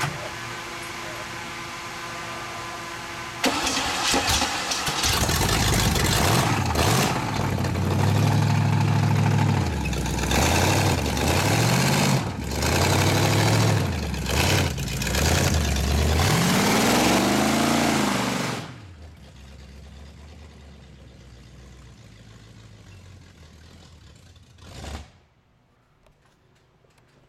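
V8 engine in a Chevy S10 pickup, started with a sudden loud burst about three seconds in, then revved repeatedly in rising-and-falling blips. Some eighteen seconds in it drops abruptly to a much quieter steady engine sound, with one short swell near the end.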